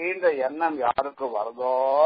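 Speech only: a man giving a spoken religious discourse, with a drawn-out syllable near the end.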